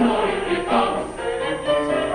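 Mixed choir of women's and men's voices singing in harmony, moving quickly from note to note.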